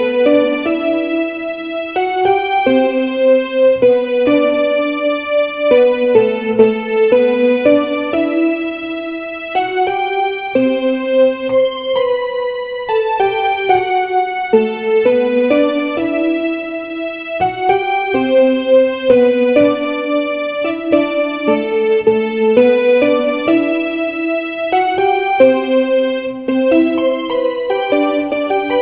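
Yamaha portable keyboard played in a piano voice: a melodic solo line over chords, each note held about a second before the next.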